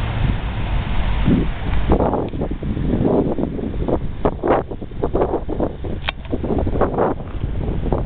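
Wind buffeting the microphone in irregular gusts, over a steady low rumble of quarry dump trucks driving along the road.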